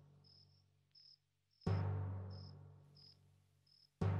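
Crickets chirping in short, irregular bursts, with one deep drum hit of dramatic score music about one and a half seconds in that rings out slowly.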